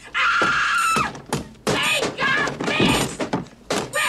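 A woman screaming in a film soundtrack: a long held high-pitched scream in the first second, then more screams and cries, with film music and effects underneath.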